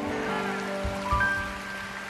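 Soft background music of sustained held chords, with higher notes coming in about a second in, over a steady hiss of rain.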